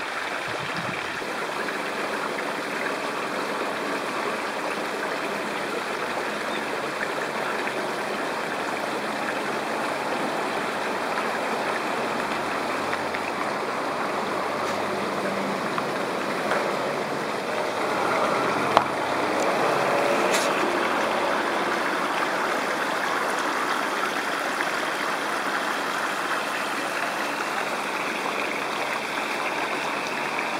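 A steady rushing noise with no pitch to it, holding level throughout, and one sharp click a little past the middle.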